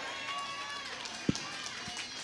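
Faint voices from the congregation in a pause between spoken lines, with one short click a little past halfway.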